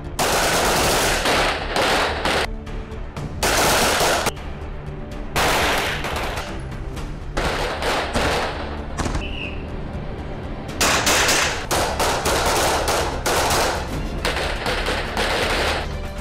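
Bursts of rapid gunfire from submachine guns and pistols on an indoor firing range, several strings of shots about a second long each, over background music.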